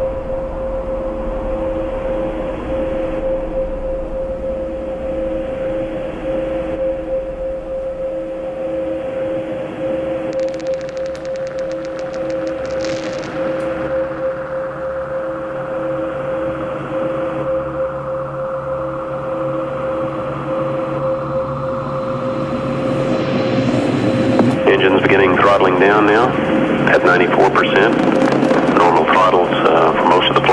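Electronic music intro of a DJ set: a sustained synth drone of two steady held tones over a hiss, with a brief run of fast high clicks near the middle. In the last few seconds it builds and grows louder as a dense, processed voice-like sample comes in.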